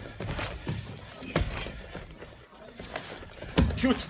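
Wrestlers' feet and bodies thudding on a gym wrestling mat as they grapple, a few irregular thumps, with a shout of "Shoot!" near the end.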